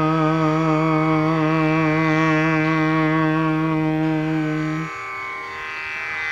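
A man's voice singing a long held note of a devotional chant with a slow waver, over a steady drone. The voice stops about five seconds in while the drone carries on.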